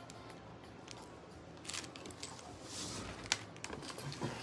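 Light clicks and rustles of jewelry being handled, a metal bead-and-ring necklace on a cardboard display card, with one sharper click about three seconds in.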